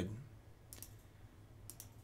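Faint computer mouse clicks over quiet room tone: a couple about three-quarters of a second in and a few more near the end.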